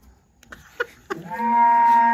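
A woman bursting into laughter: a few short bursts, then about a second in one long, loud, held note.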